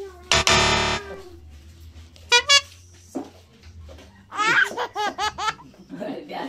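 A loud, harsh buzzer sound effect lasting under a second near the start, then a short high-pitched squeal and, near the end, a burst of laughter from the people watching.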